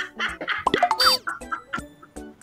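Several people laughing hard together, with high-pitched shrieks of laughter that swoop up and down in pitch.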